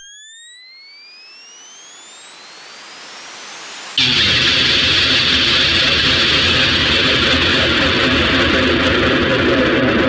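Electronic music transition: a hissing white-noise riser with three rising synth sweeps swells for about four seconds, then cuts abruptly into a loud, dense, harsh wall of distorted noise that holds steady.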